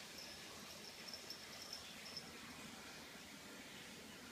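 Faint, high-pitched chirping at one steady pitch, in a few short trills during the first two seconds, over quiet room hiss.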